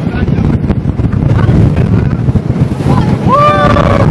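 Wind buffeting the microphone over the steady rush of a speedboat running fast across open sea. About three seconds in, a person's voice calls out in a long, held cry.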